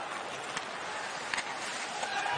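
Hockey arena ambience under live play: a steady crowd murmur with skating on the ice, and two sharp clicks about a second apart, the sort made by sticks on the puck.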